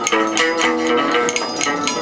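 Chầu văn ritual music in an instrumental passage: a plucked lute plays held melody notes over a sharp, regular clicking beat from percussion.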